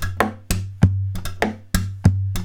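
Acoustic guitar played as a drum kit: palm strikes on the body give a deep ringing bass-drum boom, and slaps give the snare. Between them, quick hi-hat clicks come from the hand bouncing the strings against the frets. Together they make a steady bass drum, hi-hat, snare, hi-hat beat, with some of the hi-hats doubled or tripled.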